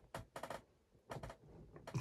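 A few faint, short clicks with light handling noise between them.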